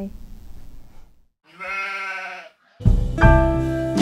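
A single sheep bleat, about a second long, starting about a second and a half in. Piano music starts about three seconds in.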